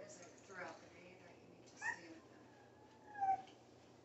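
A toddler's short high-pitched squeals and babbling; the loudest is a drawn-out squeal falling in pitch about three seconds in.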